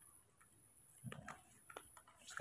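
Faint ticks of a metal spoon against a small plastic bowl while porridge is stirred, with a few light clicks in the second half.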